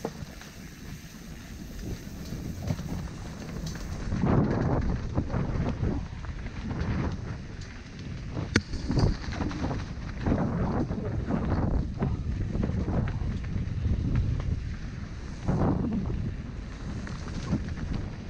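Mountain bike rolling down a dirt forest trail, heard from on the bike: tyres rumbling over dirt and leaf litter and the bike rattling over bumps, with wind on the microphone. The rumble gets louder from about four seconds in, and there are a couple of sharp clicks.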